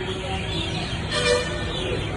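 A single short vehicle horn toot just past the middle, over steady outdoor traffic background.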